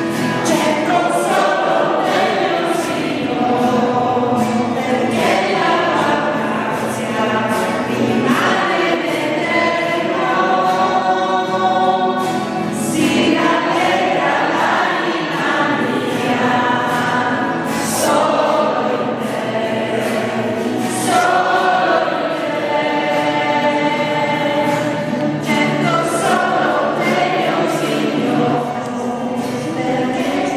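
A choir singing Christian worship music, several voices together without a break.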